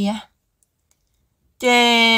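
Speech only: a voice narrating in Hmong stops about a quarter second in, leaves a second and more of dead silence, then resumes near the end with a long drawn-out syllable.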